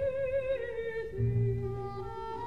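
Operatic soprano singing a long sustained note with vibrato, stepping down to a lower held note about half a second in, over soft orchestral accompaniment whose bass notes come in a little after a second.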